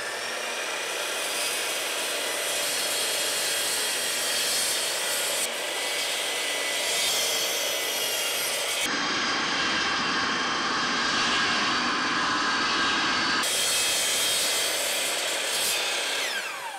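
Bosch GCM12SD 12-inch sliding miter saw running and cutting through wood, with a shop vacuum running for dust extraction. The saw's whine rises as it spins up at the start and falls as it winds down near the end.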